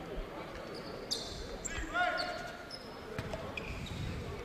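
Quiet basketball gym sound during a stoppage after a foul: a ball bouncing on the court floor, faint voices, and a brief rising high-pitched squeak about two seconds in.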